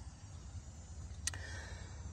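Quiet background with a steady low rumble and one short click a little over a second in.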